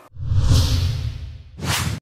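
Whoosh sound effects of a TV news channel's logo sting: a long swelling whoosh over a deep rumble, then a second, shorter whoosh near the end.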